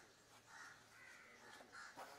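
Crows cawing faintly, about three short harsh calls in a row.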